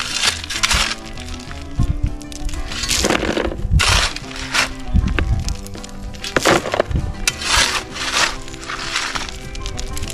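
A shovel scraping into a pile of broken rock and fill dirt, with loads tipped into a plastic garden cart: several irregular gritty scrapes and clatters. Background music plays under them throughout.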